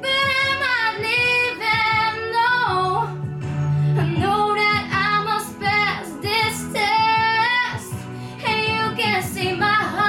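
A girl singing a slow ballad into a microphone over backing music, with long held notes that slide between pitches.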